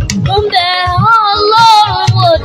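A child singing live into a microphone, holding one long note with a wavering vibrato from about half a second in, over the band's accompaniment.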